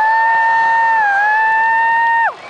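One long, loud, high-pitched cheer from a spectator close to the microphone. It slides up at the start and holds steady with a brief dip about a second in.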